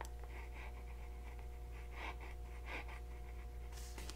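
Fountain pen nib writing on paper: faint, short scratches as the letters of a word are formed.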